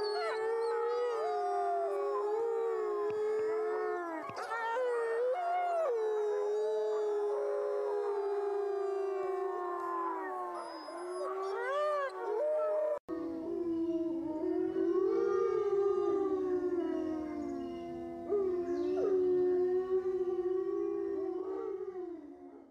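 A pack of gray wolves howling in chorus: several voices overlap in long, held howls that slide up and down in pitch. There is a sudden brief break about 13 seconds in, after which the chorus carries on in a lower pitch.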